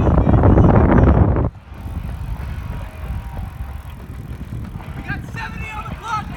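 Runners' footsteps on a rubberised track, under a loud rushing noise that fills the first second and a half and then cuts off suddenly. Voices come in near the end.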